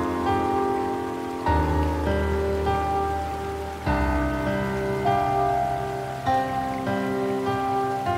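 Slow, soft solo piano music: sustained chords over low bass notes, with a new chord struck about every two and a half seconds. A steady rain-like hiss lies beneath.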